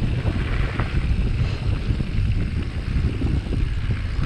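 Wind buffeting the microphone of a helmet-mounted camera on a mountain bike rolling down a loose gravel trail, with a steady low rumble and scattered small knocks from the tyres and bike over the stones.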